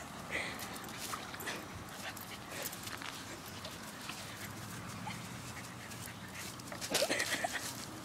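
A dog whimpering softly now and then, with faint rustling and small clicks; the loudest whimpers come about seven seconds in.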